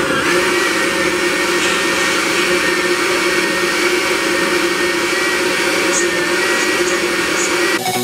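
Countertop blender running steadily at full power, puréeing roasted chiles, tomatillos, cilantro and water into a smooth green sauce. It cuts off abruptly just before the end.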